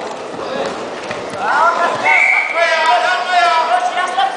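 Several voices shouting, rising into loud, drawn-out yells from about a second and a half in, over a background murmur of voices.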